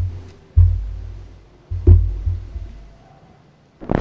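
Three heavy, deep thuds picked up close to a microphone, about half a second and then a second and a quarter apart, each dying away over about a second. A short rustle comes right at the end.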